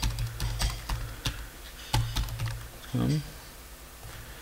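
Irregular keystrokes on a laptop keyboard over a steady low hum, with a short voiced sound about three seconds in.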